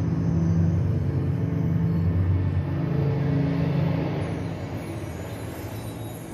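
Low, droning rumble of a projection show's soundtrack over loudspeakers, held deep tones that soften from about four seconds in.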